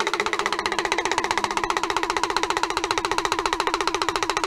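Rajbanshi folk instrumental music: a pitched instrument played in a fast, even tremolo of repeated strokes on a steady note, about fifteen strokes a second.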